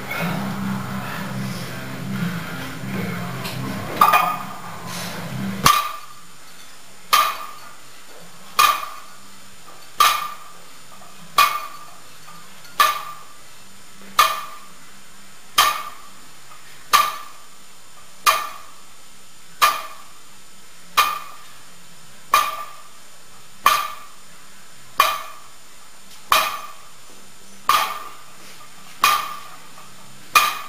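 Loaded 80 kg barbell with iron plates touching down on a wooden deadlift platform at the bottom of each repetition: a sharp metallic clank with a brief ring, repeating steadily about once every second and a half from about four seconds in.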